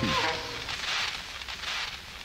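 A break in the music on an old cassette demo recording: the held tones slide down in pitch and drop out at the start, leaving an uneven hiss until the track comes back in.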